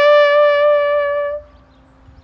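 Bugle holding the long final note of a bugle call, steady in pitch, which stops about one and a half seconds in.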